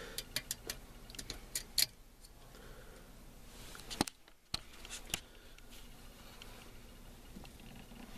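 Light, sharp clicks and taps from a manual gear lever being moved through its gates and a tape measure held against it, several in quick succession in the first two seconds, a few more about four and five seconds in.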